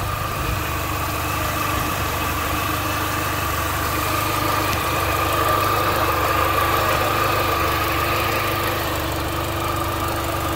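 2006 Mini Cooper S's supercharged 1.6-litre four-cylinder engine idling steadily, with a steady high whine over the rumble.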